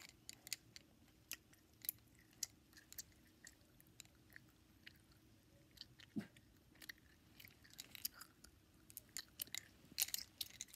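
Near quiet, with faint, irregular small clicks and taps scattered throughout, several a second at times, and a brief low hum about six seconds in.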